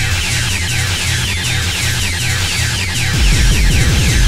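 Hard-driving 1992 UK hardcore acid techno track: a fast repeating high synth sequence over a pulsing synth bass line, with the heavy bass drum coming back in about three seconds in.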